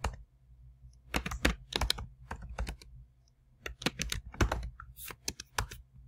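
Typing on a computer keyboard: quick runs of keystrokes with a short pause of about half a second midway.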